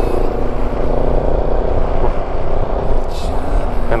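Kawasaki Versys motorcycle engine running at a steady cruising speed, its steady note under a low wind rumble on the onboard microphone.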